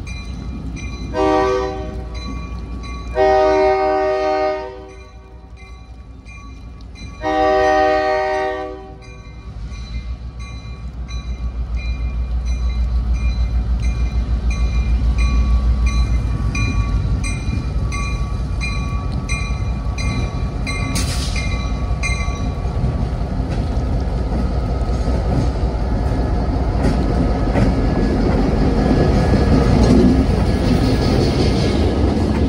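Diesel locomotive horn sounding three blasts for a grade crossing, a short one and then two long ones, while the crossing-signal bell rings steadily. Then the locomotive's diesel engine rumble builds as it draws near and passes close by.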